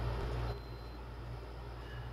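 A pause between words filled with a low steady hum and background noise. A faint, thin high tone sounds briefly about half a second in.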